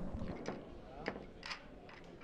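Quiet hall with faint room tone and a distant murmur of voices, with three soft clicks about half a second, one second and a second and a half in.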